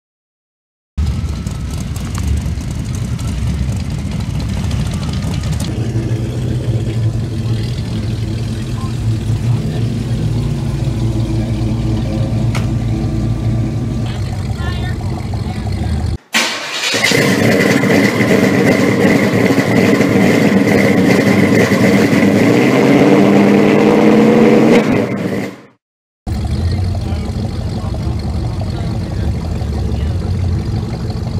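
Classic car engines idling with slight revs, in three short clips separated by abrupt cuts and brief silences about 16 and 26 seconds in. The middle clip is the loudest and rises in pitch near its end.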